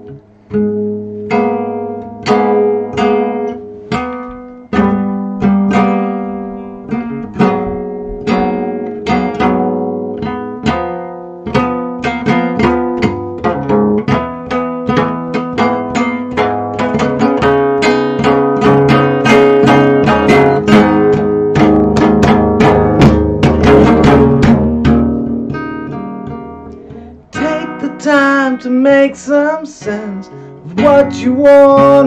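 Solo nylon-string classical guitar: picked chords building into fast, loud strumming through the middle, then easing off. A man's singing voice comes in over it near the end.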